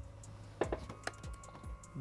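A few faint, sharp clicks and taps, scattered over about a second and a half, over a low steady hum.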